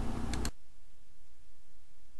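Two quick computer-mouse clicks, then the microphone's live room hum and hiss cut off suddenly about half a second in as the mic is muted, leaving a much quieter background.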